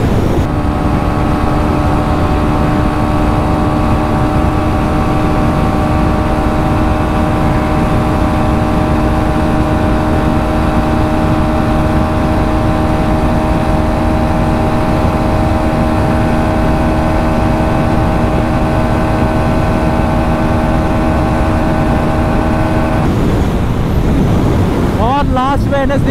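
2024 Bajaj Pulsar NS125's single-cylinder engine held flat out near top speed, a steady, unchanging engine note with wind rush.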